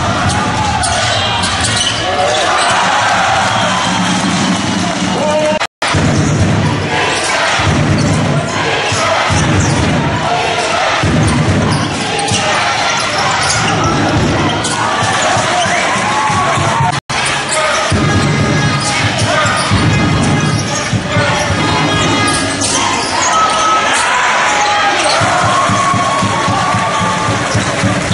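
Live basketball game sound in an indoor arena: a ball dribbled on the hardwood court amid crowd noise and voices. The sound cuts out completely for an instant twice, where one game clip is spliced to the next.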